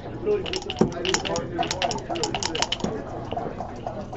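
Backgammon dice shaken in a dice cup and thrown onto the board: a rapid run of sharp clicks that lasts about two seconds as they rattle, tumble and settle.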